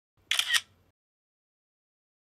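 Camera shutter sound, a quick double click, marking a snapshot being taken.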